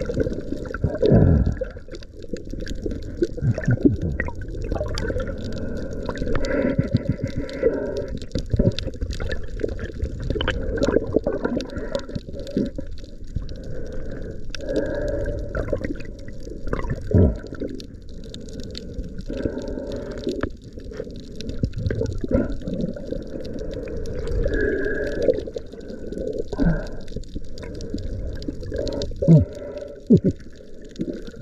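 Muffled water sloshing and gurgling as heard by an underwater camera held just below the sea surface, with swells every few seconds and a few sharp knocks.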